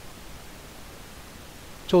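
Steady, even hiss of background noise with no distinct events, then a man's voice starting just before the end.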